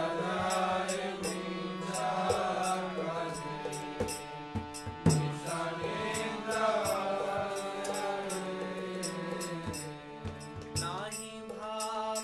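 A man singing a Vaishnava devotional song in a chanting style, over a held drone accompaniment and a steady, high, ticking percussion beat.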